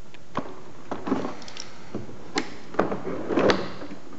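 Plastic flaring-kit cases being handled and put away: a string of irregular clicks, knocks and short scrapes, the loudest knocks a little past halfway and near the end.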